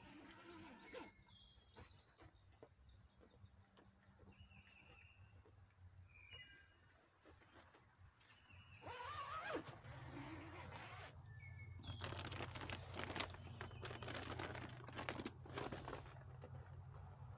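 Faint bird chirps, then from about nine seconds in a battery-powered handheld shower pump spraying: a steady low motor hum with the patter of water splashing down inside a pop-up shower tent.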